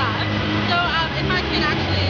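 A woman talking over background crowd chatter, with a steady low hum underneath.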